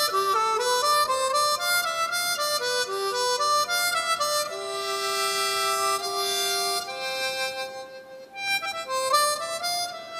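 Solo harmonica playing a melody in quick stepping notes, then holding one long low note through the middle; the sound drops away briefly near the eighth second before the line picks up again.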